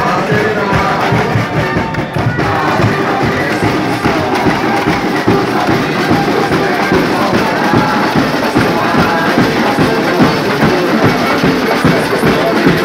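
Carnival samba bateria playing live: massed drums beating a steady samba rhythm, with crowd noise.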